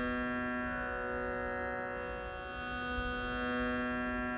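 Tanpura drone: a steady, unbroken chord of sustained tones with faint slow shimmering sweeps in its upper overtones, sounding the pitch for a Carnatic vocal piece.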